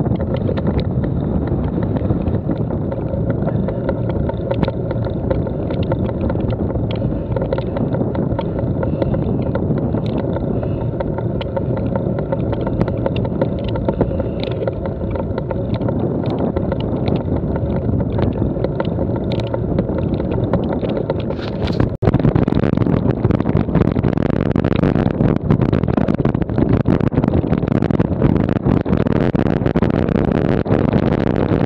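Bicycle tyres rolling over a loose stony track, with wind buffeting the action-camera microphone and scattered small rattles and ticks from the bike. After a brief break about two-thirds of the way through, the sound is louder and brighter, with more rattling.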